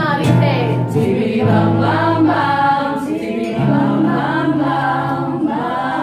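Three women's voices singing together in harmony, holding long notes that bend between pitches, over an acoustic guitar accompaniment.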